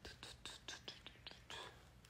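A man whispering very quietly, a quick run of short breathy syllables that stops just before the end.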